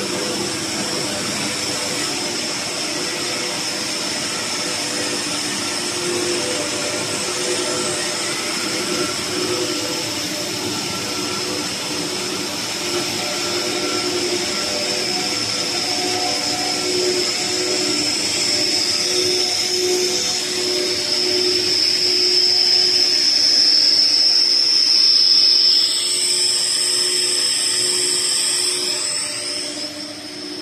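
PE pipe extrusion line running: a steady mechanical drone from its motors and pumps, with a constant high-pitched whine over several steady lower hums. It grows gradually louder toward the latter part, then eases off near the end.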